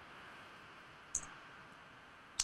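A single short click about a second in, over faint steady hiss.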